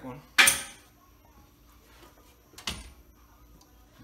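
Two sharp metallic clanks from hand tools being handled under a car, each with a short ring. The first, about half a second in, is the loudest; the second, softer one comes a little before three seconds.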